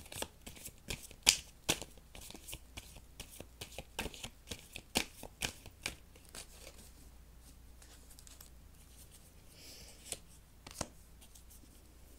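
A tarot deck being shuffled by hand: a quick run of crisp card snaps and flicks for about the first six seconds, then softer handling with an isolated click near the end as a card is drawn.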